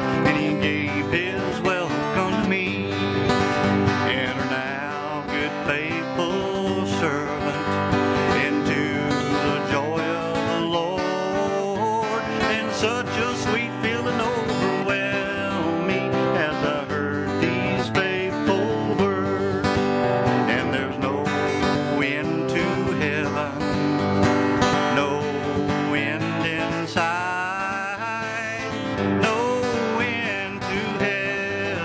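Acoustic guitar strummed steadily in a country gospel style, with a man singing along over it.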